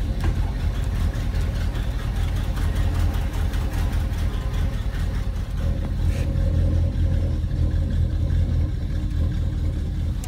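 Tour boat's engine running steadily under way: a continuous loud, low rumble.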